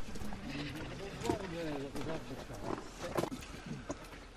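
Faint, indistinct voices of walkers talking in the background, with a few light knocks.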